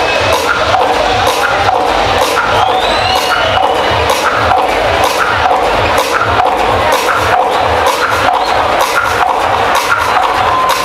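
Loud electronic dance music from a DJ set over a nightclub sound system: a steady kick drum about two beats a second with hi-hats ticking between the beats.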